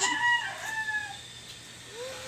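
A farm animal's drawn-out call, the end of a longer pulsed cry, its pitch dipping and falling before it fades out about a second in.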